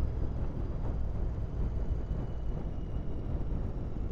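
Royal Enfield Interceptor 650 parallel-twin engine running steadily at cruising speed, heard from the rider's seat, with wind and road noise over it.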